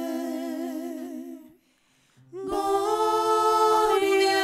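Voices singing a slow sung prayer in long held notes with vibrato. The singing breaks off for a moment about a second and a half in, then resumes louder with long sustained notes.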